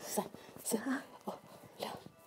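Soft, indistinct speech and whispering in short fragments, with breathy hisses in between.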